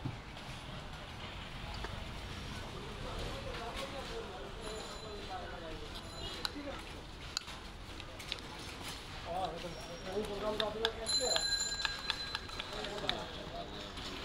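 Steel knife and spoon clinking and scraping against a steel mixing cup, with scattered sharp clicks and a few short bell-like metallic rings, the longest a little past the middle. Voices chatter in the background.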